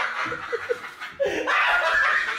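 Laughter in short snickers and chuckles, dropping away about a second in, then louder again near the end.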